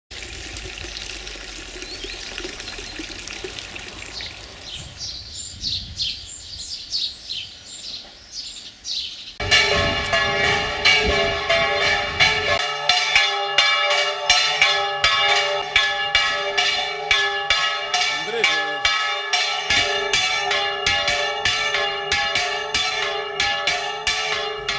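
Birds chirping over a trickling pond fountain, then, about nine seconds in, the church bells of Salces start suddenly, rung by hand. They ring in a fast, unbroken peal of overlapping strikes.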